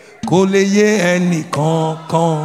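A man's voice singing in a chant-like way into a microphone, holding long notes with a slight waver. The notes come in two phrases, with a brief break about one and a half seconds in.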